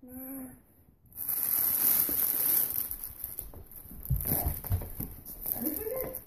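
Cellophane wrapping on a large wicker basket crinkling and rustling as it is grabbed and handled, with a few low bumps about four seconds in. A short voiced grunt opens it and another brief voiced sound comes near the end.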